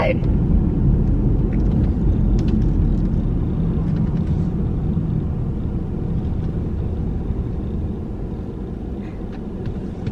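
Steady low road and engine rumble of a Mercedes-Benz car heard from inside the cabin while driving, growing somewhat quieter in the last few seconds as the car eases off.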